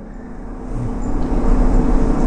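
A steady low background rumble with no speech, growing louder through the two seconds.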